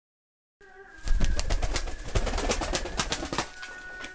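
Tumbler pigeon beating its wings: a rapid run of wing claps, about eight a second, starting about a second in and stopping near the end.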